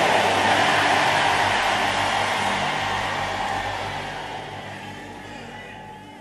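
Church congregation cheering and shouting in response to a declaration, a loud wash of crowd noise that slowly dies away, with a keyboard's held low notes underneath.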